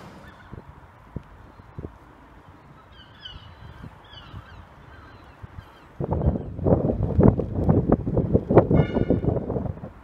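Birds calling: a few faint calls at first, then loud, repeated calls from about six seconds in.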